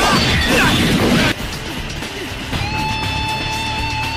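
A loud crashing impact sound effect for about a second and a half over the background music, followed by music with a long held high note from about two and a half seconds in.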